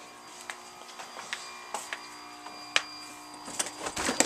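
A steady electrical hum with a faint high-pitched whine, from the inverter-and-heater setup running under load, broken by irregular soft clicks and knocks.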